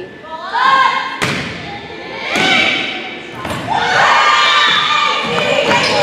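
A volleyball being struck: a sharp thump about a second in, then a few more hits during a rally. Girls and spectators shout and cheer loudly in an echoing gymnasium.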